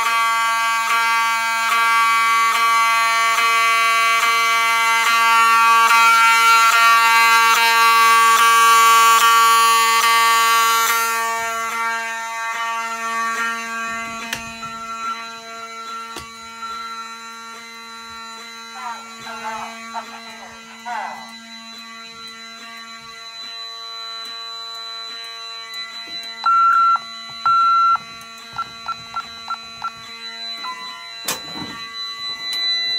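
Fire alarm horn sounding a continuous tone in alarm. It is loud for the first ten seconds or so, then fainter. Near the end come two short electronic beeps from an alarm keypad.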